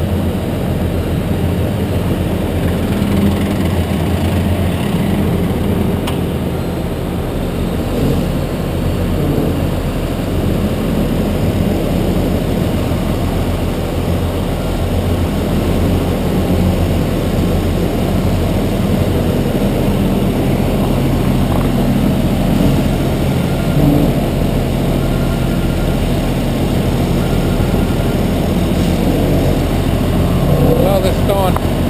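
Ready-mix concrete truck's diesel engine running steadily while it discharges concrete down its chute, a constant low hum.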